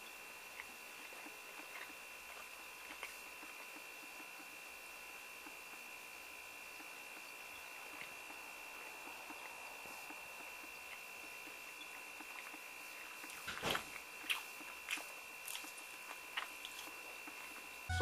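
A person chewing and biting fried chicken close to the microphone. It is quiet for most of the time, with a faint steady high whine underneath. A handful of sharp chewing clicks and smacks come in the last few seconds.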